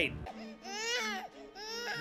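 A baby crying on an anime's soundtrack: two wails that rise and fall, the first about a second long, the second shorter near the end.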